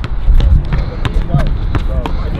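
Wind buffeting the microphone in a heavy low rumble, with a handful of sharp, irregular knocks on the court and faint voices of people nearby.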